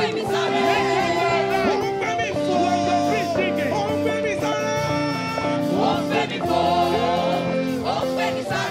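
Gospel worship song sung by many voices with instrumental backing, the melody moving through long held notes.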